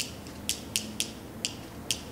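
Go stones clicked together in the hand: six short, sharp clicks at uneven intervals.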